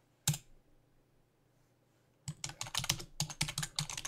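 A single sharp click, then after about two seconds of near silence a fast run of computer keyboard typing.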